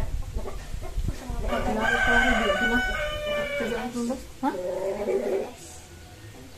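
A rooster crowing: one long call of several drawn-out notes, starting about a second and a half in and lasting about four seconds, with a short break near the end.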